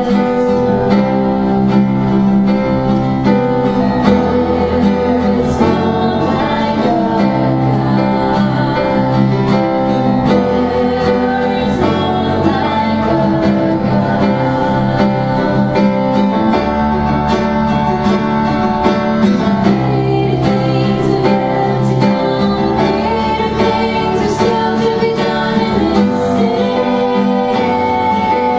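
A small live worship band plays a slow song: strummed acoustic guitar over sustained electric keyboard chords with a changing bass line, and women's voices singing the melody.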